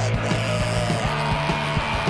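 Rock band playing: a steady drumbeat, bass and electric guitar, with a long held high note that steps up in pitch about a second in.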